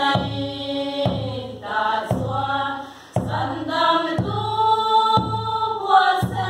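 A group of women singing a hymn together, with a low beat about once a second under the singing.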